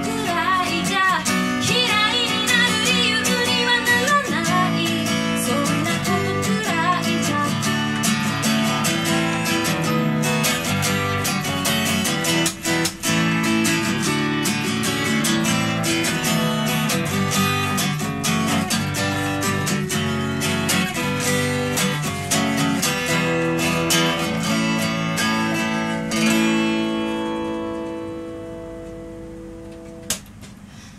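Strummed acoustic guitar played live, with a woman's singing voice over it in the first few seconds; the rest is steady guitar strumming, ending on a chord left ringing and fading away over the last few seconds.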